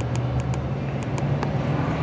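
A steady low mechanical drone, like a running engine or machine, with a few light sharp clicks over it.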